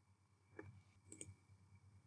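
Near silence broken by faint clicks at a computer: one about half a second in and a couple more just over a second in.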